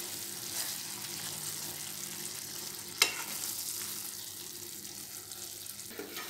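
A coconut and sugar syrup mixture sizzling steadily in a non-stick kadhai on a low flame as a spatula stirs it, the syrup cooking down toward dryness. One sharp click about halfway through.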